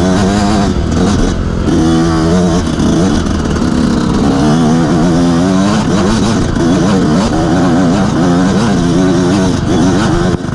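Enduro motorcycle engine heard close up from the rider's helmet, its pitch rising and falling over and over as the throttle is opened and eased.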